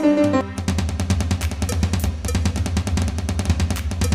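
Programmed drum-kit beat from the Walk Band app: a fast run of hits over a steady low bass, taking over from a piano melody that stops about half a second in.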